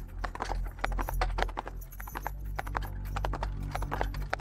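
Horses' hooves clip-clopping in a quick, irregular patter, as of several horses pulling carts, over a low steady rumble.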